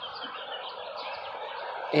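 Birds chirping and twittering continuously in a dense chatter, over a steady background hum.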